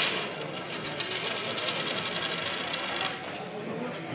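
Fizzing hiss of carbonation from a freshly opened glass beer bottle, dying away about three seconds in.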